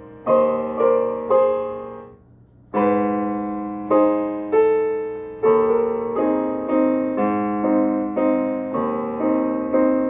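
Digital piano played slowly: held chords struck about once or twice a second, each ringing and fading away. Near the start the sound dies away to a brief pause before the playing resumes.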